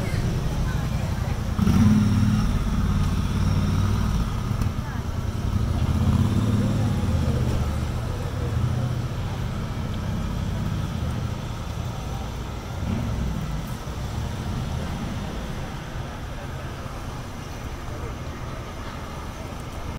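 Busy street ambience: a steady low rumble of traffic, with people's voices in the background, easing slightly toward the end.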